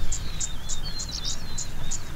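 Wild birds singing: short twisting whistled phrases and a high chirp repeated about three times a second, over a low steady rumble.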